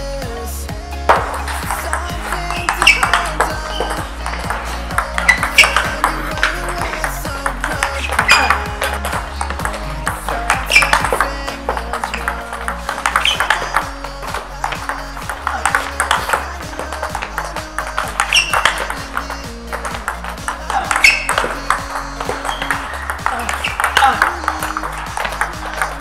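Table tennis balls struck in quick succession during multiball backhand flick and counterspin drills: sharp clicks of rubber bats hitting celluloid balls and balls bouncing on the table, over electronic background music with a steady beat.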